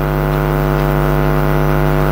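Steady low electrical hum with a stack of evenly spaced overtones, unchanging in pitch and level, typical of mains hum in a microphone and amplifier system.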